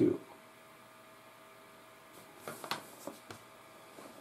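A few light clicks and taps, about two and a half to three and a half seconds in, from metal tweezers being handled on a cutting mat, over a low steady room hum.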